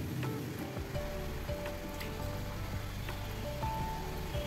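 Gathiya dough strips deep-frying in hot oil in a steel kadai, a steady sizzle, under soft background music with sustained notes.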